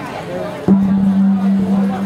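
Crowd chatter over a steady low held tone. The tone cuts back in sharply and louder a little under a second in, then holds.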